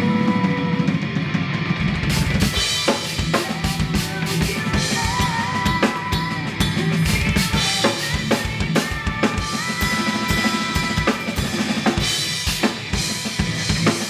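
Yamaha acoustic drum kit played over a backing track: the drums come in hard about two seconds in, with heavy bass drum, snare and cymbal hits.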